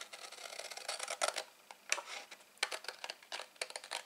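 A large sheet of patterned card stock rustling and crackling as it is handled and turned on a desktop, with many small irregular clicks.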